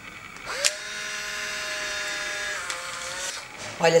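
Polaroid instant camera taking a picture: a shutter click about half a second in, then the film-ejection motor whirring steadily for about two seconds as the print is pushed out.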